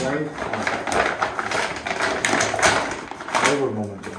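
Thin plastic wrapping crinkling and rustling in irregular crackles as it is pulled off a rifle.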